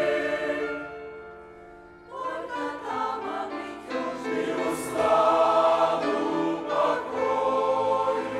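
Mixed church choir of men's and women's voices singing a Russian-language hymn. A held chord fades away over the first two seconds, then the choir comes back in and swells to full voice about five seconds in.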